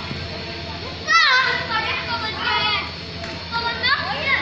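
Children's high-pitched voices calling and shrieking in short bursts, about a second in, again midway and near the end, over a steady low hum.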